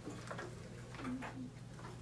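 Faint, light, irregular ticks and clicks over a low room hum.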